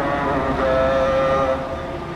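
Amplified voice chanting a mourning lament through truck-mounted loudspeakers, long notes held and sliding from one pitch to the next, over the low noise of the marching crowd.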